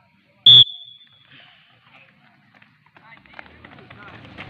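A single short, shrill whistle blast about half a second in, sharp at the start and then a high steady tone that trails off.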